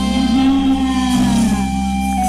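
Amplified live ramwong band music through a PA: a held chord over a steady bass with no drums, and one note sliding slowly downward in the middle.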